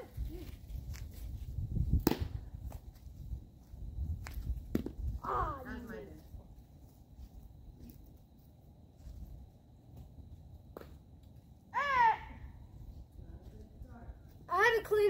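A few sharp pops of a baseball smacking into a leather glove during a game of catch, the loudest about two seconds in, over a low rumble in the first few seconds. Two short vocal calls come in, near the middle and near the end.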